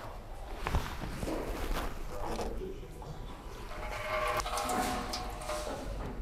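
Repair-shop background: a few light knocks and clinks over a low steady hum, with faint voices in the distance.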